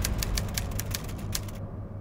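Typewriter key-clacking sound effect: a rapid, even run of about eight clicks a second that stops about one and a half seconds in, over a steady low rumble.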